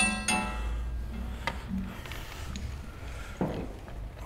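A sharp metallic clink that rings on briefly, a second clink just after it and a lighter knock about a second and a half in: the metal catch pole knocking against metal as the fox is handled and lifted.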